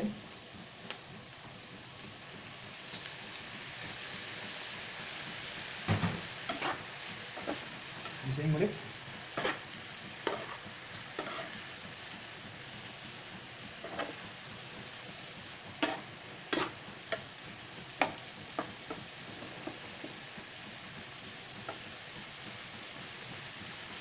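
Beef, onions and ginger sizzling in a hot frying pan as soy sauce is poured in, the sizzle building over the first few seconds. From about six seconds in, a metal spatula scrapes and taps against the pan in irregular clicks as the mix is stirred.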